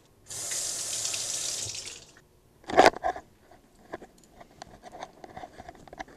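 Water running from a tap for about two seconds, then cut off, followed by one loud knock and a few light clicks and handling sounds.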